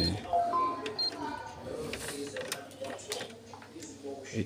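Canon MF8280Cw control-panel keys being pressed: two short high beeps about a second apart, with light clicks of the buttons, over faint voices in the room.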